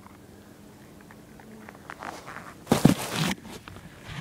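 Leaves and twigs rustling and crunching close to the microphone as the camera moves through foliage, with small crackles building to a loud rustle about three seconds in.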